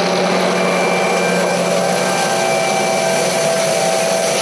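John Deere tractor pulling an air seeder through tilled soil, running as a steady, loud machine rush with a few faint steady whines.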